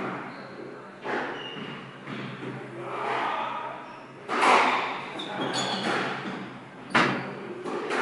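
Squash ball hit by rackets and smacking off the court walls in a rally: three sharp cracks, about a second in, a little past halfway and near the end, each ringing on in the enclosed court. Short high squeaks of court shoes on the wooden floor come between the hits.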